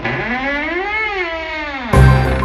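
A single eerie pitched tone that slides smoothly up and back down over about two seconds, theremin-like, opening a show's intro music. It gives way at the end to the start of the theme music.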